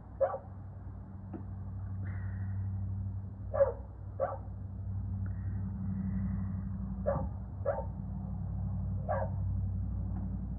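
A dog barking off-screen, about six barks, mostly in pairs about half a second apart, over the steady low hum of an air compressor running to inflate a motorhome tyre.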